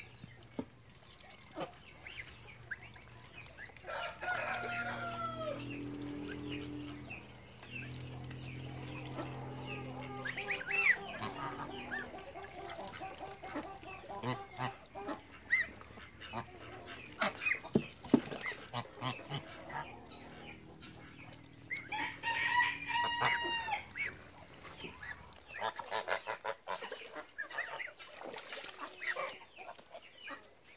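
Embden geese honking and calling among farmyard chickens, with a loud run of repeated honks about three-quarters of the way through.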